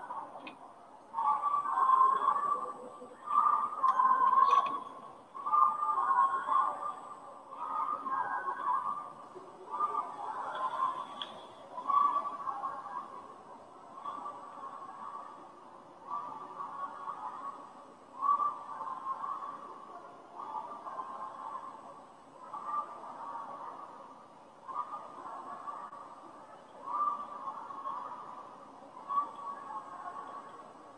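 Muffled, indistinct voices in short phrases that repeat about every second or so, louder in the first few seconds and then fainter.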